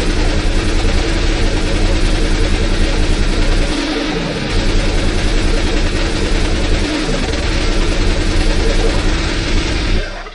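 Very fast, heavily distorted hardcore electronic music from a DJ mix: a dense wall of noise over rapid, evenly repeating kick drums and heavy sub-bass. The bass drops out briefly about four seconds in and again about seven seconds in.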